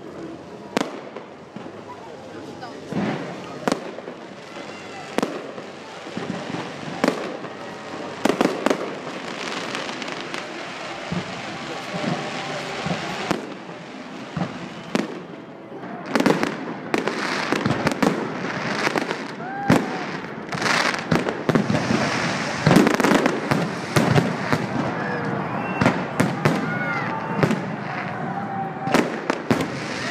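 Aerial fireworks display: shells bursting in irregular bangs over a continuous crackle and rumble. It grows denser and louder from about halfway through.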